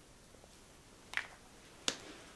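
A short, faint spritz from a spray bottle of rose water about a second in, then a single sharp click near the end.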